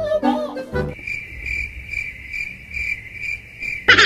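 Cricket chirping sound effect: a steady, high trill pulsing a few times a second. It cuts in abruptly after a snatch of music about a second in and is cut off near the end by a loud burst of music.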